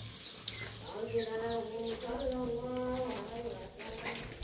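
Small birds chirping in a quick run of short, falling chirps, with a long steady voice-like tone held for about two seconds in the middle.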